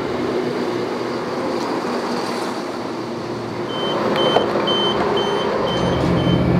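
Class 171 diesel multiple unit moving along the platform, a steady running noise with an engine hum. From about two-thirds of the way through, a regular high beeping, roughly two or three beeps a second.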